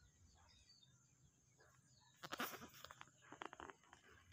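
A bleating animal call about halfway through, pulsing and breaking off, with a second pulsing stretch near the end, over near-silent outdoor background.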